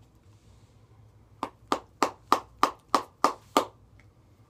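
A Copenhagen dip tin being packed: about nine sharp, evenly spaced taps, roughly three a second, starting about a second and a half in.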